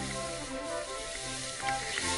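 Background music playing over a continuous hiss of skis sliding across spring snow during a downhill run.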